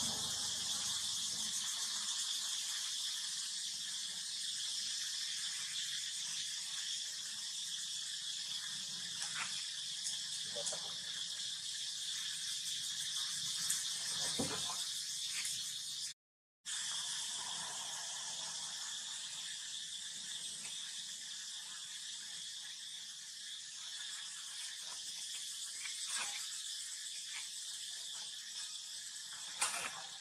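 Steady high-pitched drone of insects, with a few brief squeaks in the middle. The sound drops out for a moment about halfway through.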